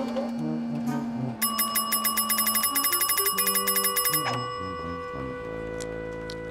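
A desk service bell rung rapidly, about ten dings a second for nearly three seconds starting about a second and a half in, its ring hanging on briefly after it stops. Background music plays underneath.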